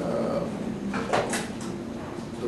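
A man's brief hesitation sounds and breath in a pause between sentences, with a short breathy burst about a second in.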